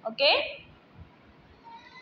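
A woman's voice saying a short "okay" with a rising-then-falling pitch, followed by quiet room tone with a few faint ticks.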